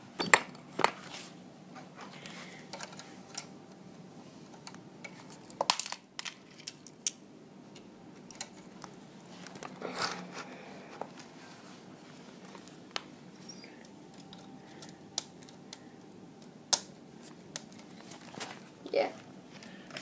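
Scattered plastic clicks and knocks of Lego Technic parts being handled and fitted back onto a toy garbage truck's compactor, at irregular times with a few sharper clacks.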